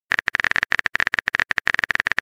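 Phone keyboard typing sound effect: a fast run of short clicks, about a dozen a second, each with a brief high-pitched tick.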